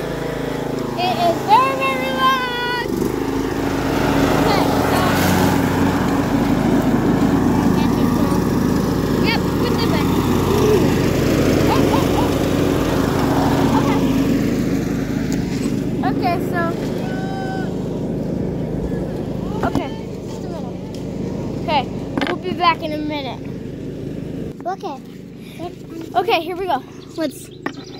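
An engine runs with a steady drone, then fades away over the last few seconds. Voices break in briefly a few times.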